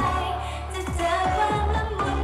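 Idol-group pop song performed live: female voices singing over a backing track with bass and a steady kick-drum beat, about two beats a second, through stage speakers.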